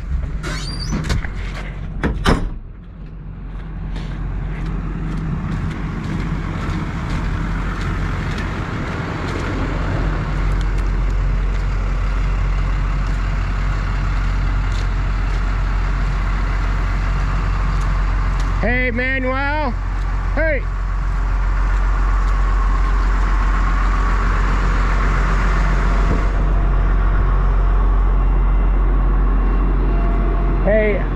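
Heavy farm machinery engines idling steadily, a constant low hum, with a sharp knock about two seconds in.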